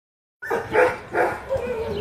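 A dog barking in three short bursts in quick succession, the last one drawn out.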